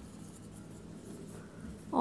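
Dry-erase marker writing on a whiteboard, a faint scratching as the letters of a word are written out.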